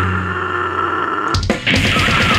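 A slam death metal band is playing live with distorted guitars and drums. The drums drop out while a low distorted note is held with a steady high tone ringing over it. After a brief break with a few hits, the full band crashes back in near the end.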